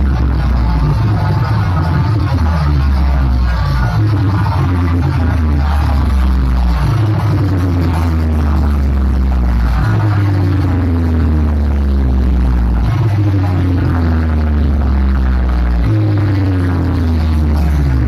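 Loud electronic dance music blasting from stacked DJ speaker boxes. Deep sustained bass notes change every three seconds or so, and falling pitch sweeps repeat above them.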